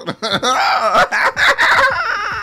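Chicken clucking and squawking, much louder than the talk around it, starting about a quarter second in.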